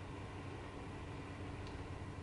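Low, steady hum and hiss of a room air conditioner running.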